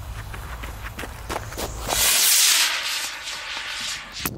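Footsteps crunching on gravel as someone runs off. About two seconds in, a D-size Estes model rocket motor fires and launches with a loud hiss that fades within about a second as it climbs.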